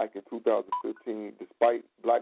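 A person talking over a telephone line, the voice narrow and thin. A brief electronic beep sounds about three-quarters of a second in.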